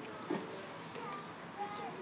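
Faint outdoor background with distant voices and a few brief faint tones; no loud sound in the foreground.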